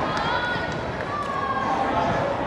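Drawn-out shouts and calls of footballers on an open pitch during play, over steady outdoor background noise.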